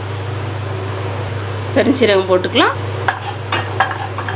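Fennel seeds tipped into a dry aluminium kadai and stirred with a wooden spatula. There are a few light clicks and scrapes in the last second, over a steady low background hum.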